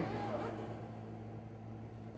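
Quiet room tone with a steady low hum; no zipper or other handling sound stands out.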